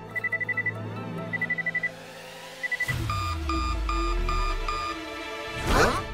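Cartoon sound effects over music: rapid electronic beeping in short bursts like an alarm clock, three bursts in the first three seconds. Then a falling low tone under a run of five evenly spaced beeps, and a loud sweep near the end.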